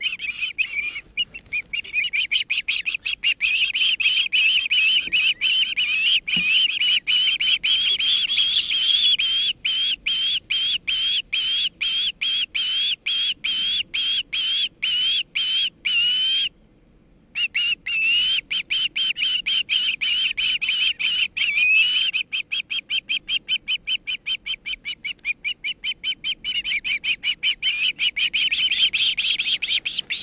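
Ospreys calling on the nest: a long run of shrill, whistled chirps repeated several times a second, each rising slightly in pitch, with a pause of about a second near the middle.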